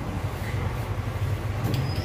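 CNG auto-rickshaw engine idling with a steady, fast-pulsing low rumble, and a faint click near the end.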